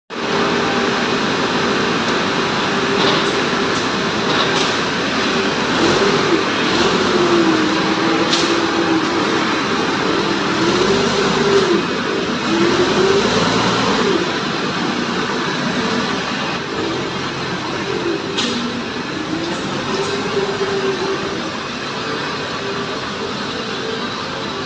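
Komatsu FD70 diesel forklift running under load, its engine note rising and falling repeatedly as it manoeuvres and lifts. A few sharp metallic clanks sound now and then over steady factory machinery noise.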